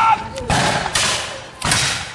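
Three black-powder musket shots in quick succession, the loudest about a second in, each echoing briefly.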